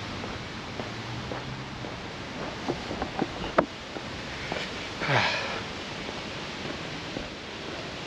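Quiet outdoor ambience while walking, with a few light footstep clicks in the middle and a short breathy sniff close to the microphone about five seconds in.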